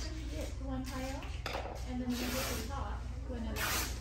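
Indistinct voices of several people talking in a room, with a few short hissing swishes over a low steady hum.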